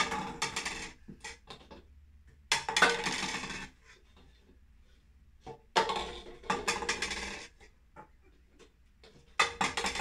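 Clear plastic cups being flipped and knocking against a wooden tabletop, in four clattering bursts of rapid knocks about three seconds apart.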